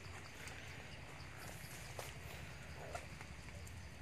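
Faint outdoor forest ambience: a steady low hum with a faint high insect chirr, and a few soft knocks, the clearest about two seconds in and just before three seconds.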